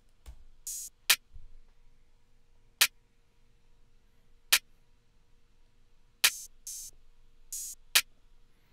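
Drum-machine open hi-hat samples and a clap from a trap drum kit playing alone at 140 BPM: five sharp clap hits about 1.7 seconds apart, with a few short hissing open-hat hits, one early and a cluster near the end.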